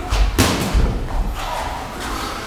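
Boxing sparring in a ring: a sharp smack of a gloved punch landing about half a second in, among dull thuds of feet on the ring's padded canvas.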